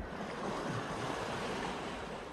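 Small sea waves washing in a steady soft hiss, with some wind flutter on the phone microphone.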